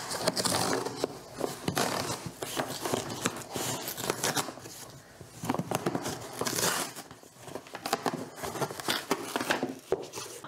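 A corrugated cardboard box being torn open along its pull strip, with an irregular ripping and rasping. Then come scraping of the cardboard flaps and crinkling of bubble wrap and a plastic bag as the packed contents are lifted out.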